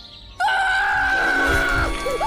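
A cartoon boy's long, high scream, starting suddenly about half a second in on one held pitch, together with a rush of noise.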